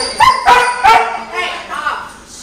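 A five-month-old standard poodle puppy barking: three loud, sharp barks in quick succession in the first second, then a couple of weaker ones.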